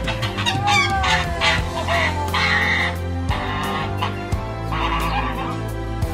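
Domestic goose honking in a series of short, harsh calls as it runs up to a person and is picked up, over steady background music.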